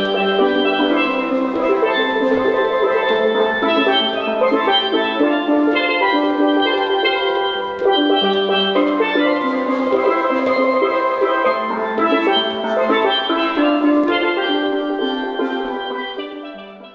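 Steel pans played by two players with sticks: a lively tune of quick, ringing pitched notes that fades out near the end.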